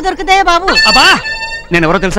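Loud film dialogue voices, broken about halfway through by a high, steady note held for nearly a second, then voices again.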